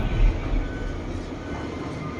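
Background music cuts away in the first moment, leaving a steady low rumble of machinery and outdoor noise with a faint thin whine, typical of a working harbour with cranes and ship machinery running.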